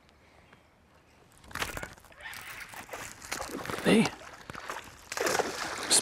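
A hooked smallmouth bass splashing and thrashing at the water's surface beside the boat. A sudden sharp sound comes about a second and a half in, and the splashing grows louder toward the end. A man gives a short shout partway through.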